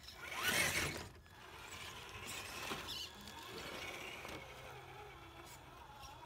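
Electric motor and gear drive of a Traxxas TRX-4 RC crawler whining at changing pitch as it works up over rocks. A short loud rush of noise comes just after the start and lasts under a second.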